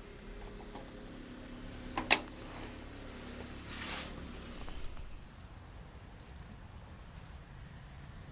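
Handling of a DVD recorder's plastic front-panel flap: one sharp plastic click about two seconds in, then a short rustle of handling. Two short high beeps sound a few seconds apart over a steady low hum.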